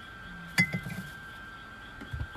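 A glass clinks once sharply about half a second in, with a short ring, followed by a few soft knocks as it is handled.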